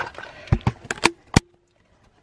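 Handling knocks from a hand-held camera being swung about: about five sharp knocks and bumps within a second, starting about half a second in.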